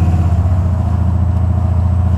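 Buick 455 Stage-1 V8 in a 1987 Buick Regal running steadily under way, an even, pulsing low exhaust rumble heard from inside the cabin. It is running on a newly fitted TA Performance HEI distributor, coil and cap, which the owner calls an improvement over the old coil that made it cut out under load.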